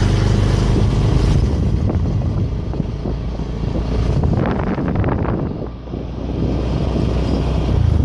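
Small motorcycle engine running steadily while riding, its low hum continuous, with a brief dip in loudness about six seconds in.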